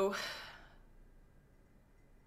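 A woman's drawn-out "so…" trailing off into a breathy sigh that fades within the first second, then near silence.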